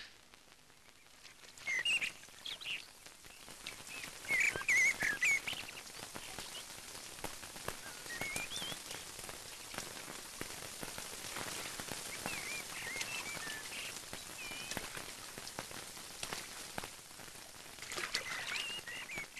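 Steady rain falling, setting in a few seconds in, with birds chirping over it in short curving calls, most busily about four to five seconds in.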